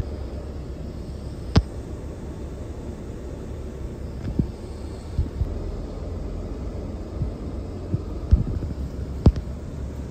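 Steady low vehicle rumble heard from inside a pickup truck's cab, with a handful of scattered sharp clicks.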